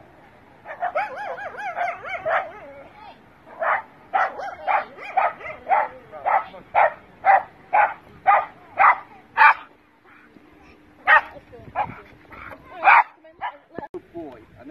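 Border terrier on a lead whining with wavering, high cries, then barking over and over at about two barks a second, pausing, and barking a few more times near the end: the reactive barking of a dog that reacts badly to other dogs.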